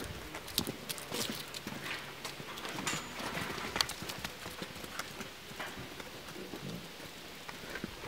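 Hooves of a Valais Blacknose ewe and lamb clicking and scuffing irregularly on a concrete floor as they walk about.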